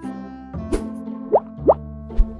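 Background music of held tones, with two short quick rising bloops a little after the middle.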